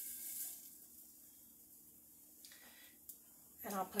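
Corn on the cob sizzling in the hot Tupperware Micro Pro Grill as its lid goes back on, the hiss fading within the first second. Then it is quiet but for a short hiss partway through and a single click.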